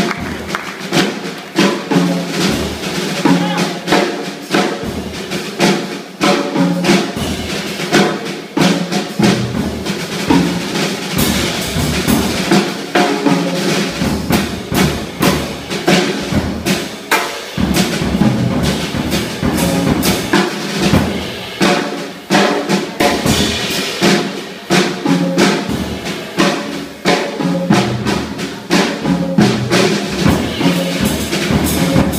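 A jazz quartet playing live, with the drum kit to the fore over electric bass and keys. The drums keep up dense, rapid strikes throughout, and the bass gets fuller about halfway through.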